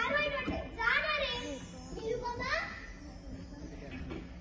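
Children's voices speaking, high-pitched and in short phrases, the speech growing quieter near the end.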